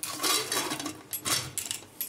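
Lid of a Hawkins pressure cooker being fitted and closed: several metal scrapes and clinks as the lid is worked into place and the handles are brought together.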